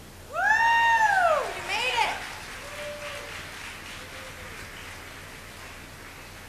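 A person whooping loudly from the audience: one long rising-and-falling "woo" of about a second, then a second, shorter whoop. After that, faint crowd noise from the hall.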